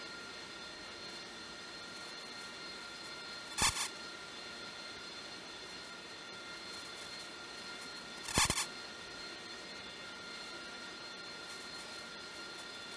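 Jet aircraft engine running steadily, a thin whine over a rushing hiss, with two brief louder bursts about four and eight seconds in.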